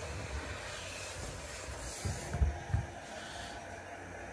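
Steady background noise with a few short, low thumps just past halfway.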